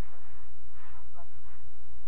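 A steady low hum, the loudest sound throughout, with faint distant voices speaking through it.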